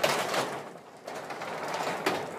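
Sectional garage door being pushed up by hand, rolling along its tracks with a continuous rattling, scraping noise that dips briefly about a second in.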